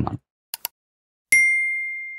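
Subscribe-button animation sound effect: two soft clicks, then a single bright notification-bell ding that rings on and slowly fades.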